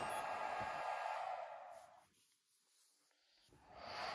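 Faint steady background hiss that fades out about two seconds in to dead silence, then returns near the end.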